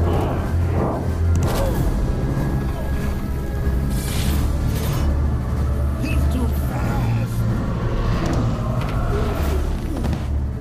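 Film soundtrack of dramatic, tense music over a heavy low bass, with booms and several sudden hits cutting through it.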